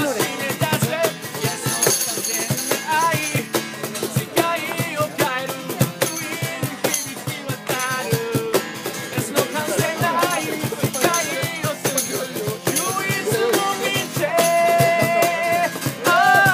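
Live acoustic music: a strummed acoustic guitar with a hand-played cajón beat and a man singing, the voice holding one long note near the end.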